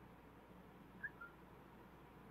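Near silence: room tone, with two faint short chirps about a second in.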